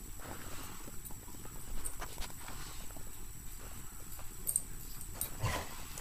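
A greyhound playing with a stuffed toy on carpet: scattered light knocks, scuffles and footfalls from its paws and the toy, with one short vocal sound near the end.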